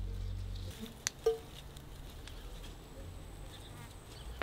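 A flying insect buzzing close by, with light rustling of raspberry leaves and stems being handled and a couple of short clicks about a second in.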